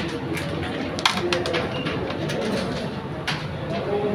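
Carrom striker flicked into the carrom men: a sharp wooden crack about a second in, then a quick run of smaller clicks as the pieces knock into each other and the board's rim, and another click later.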